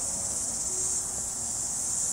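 Steady, high-pitched chorus of insects, an unbroken shrill trill with no breaks.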